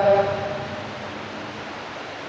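A man's drawn-out last syllable trailing off in about half a second, then a steady, even hiss of background noise with no other sound.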